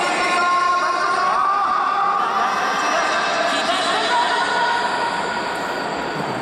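Stadium crowd noise in a large domed ballpark, with several long held tones sounding over the murmur.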